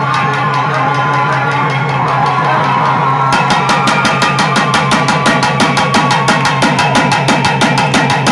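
Amplified Tamil Amman devotional song: a woman's sung melody carried over a steady low drone, with a barrel drum accompanying. About three seconds in, a fast, even drumbeat starts and continues.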